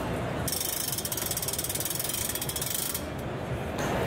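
Rapid, even, high-pitched ratchet-like clicking that starts about half a second in and cuts off suddenly after about two and a half seconds.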